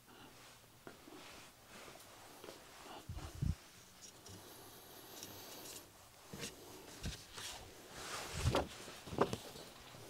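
Faint, scattered knocks and rustles of a person moving about and handling things, with a low thump about three seconds in and a cluster of thumps near the end.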